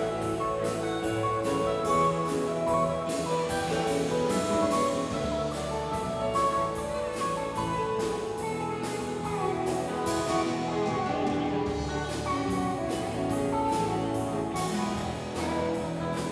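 Live band playing an instrumental piece: a drum kit keeps a steady beat with cymbals under sustained keyboard and guitar notes.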